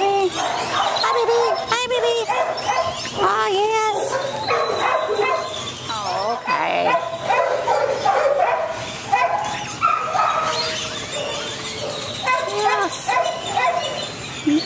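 A small terrier-mix dog whining and yipping in short high-pitched calls, mixed with a woman's soft cooing baby-talk.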